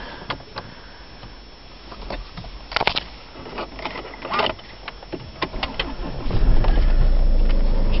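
A few light clicks, then about six seconds in the 2008 Land Rover Freelander's engine starts and settles straight into a steady idle: it starts absolutely fine.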